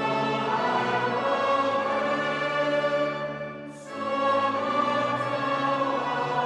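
A group of clergy singing a hymn together, men's and women's voices in sustained phrases, with a short pause between two lines about four seconds in.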